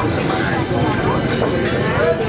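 People's voices over the steady background noise of a busy open-air market street.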